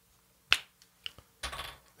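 The cap of a Wegovy injection pen is pulled off with one sharp snap about half a second in. A couple of faint clicks and a short soft rustle follow.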